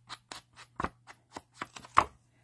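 A foam sponge swiping ink along the edges of a paper card panel in quick, short strokes, about six a second, ending with a sharper tap.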